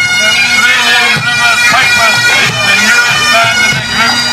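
Massed Great Highland bagpipes, many pipers playing a tune in unison over their steady drones.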